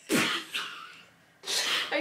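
A person sneezing: a sharp, noisy burst right at the start that fades over about half a second, followed near the end by a second breathy burst.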